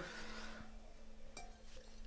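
Quiet room tone: a faint steady hum with a couple of soft clicks.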